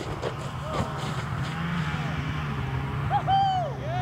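People's voices calling out, with one clear rising-and-falling shout about three seconds in, over a steady low hum. A sharp click at the very start.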